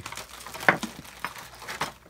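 Handling noise on a workbench: irregular rustling with light clicks as small parts and packaging are picked up and moved, with one sharper click less than a second in.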